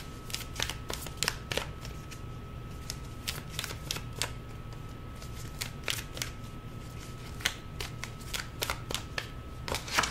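A deck of tarot cards being shuffled by hand: a run of soft, irregular clicks and flicks of card edges against each other.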